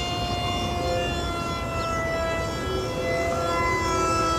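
E-flite EC-1500's twin electric motors and propellers whining in flight: a steady whine of several tones that drift slightly in pitch.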